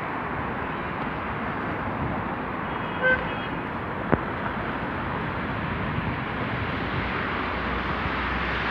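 Steady city street traffic noise, with a brief car horn toot about three seconds in and a sharp click about a second later.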